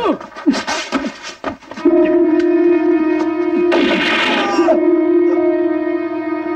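Film soundtrack: a couple of seconds of sharp cracks and short falling cries as a man is shot, then a low synthesizer-like music note held steadily, with a man coughing about four seconds in.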